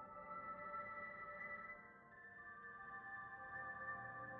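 Quiet ambient background music of soft, sustained tones that shift to a new chord about halfway through.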